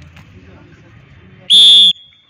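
A single short, very loud whistle blast about one and a half seconds in, a referee's whistle blown during a kabaddi game, over low background noise from the court.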